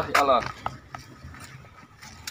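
A man's short, weary spoken exclamation, followed by a few faint light knocks and rustles of movement.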